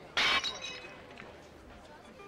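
A short, loud crash of glass about a quarter second in, with a brief high ringing that dies away within half a second.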